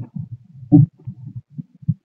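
Irregular low thumps and rumbling on a phone microphone, with one louder thump a little under a second in.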